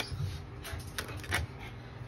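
Plastic shrink wrap on a small metal tin being punctured and torn open with a plastic fork: several sharp crackling clicks.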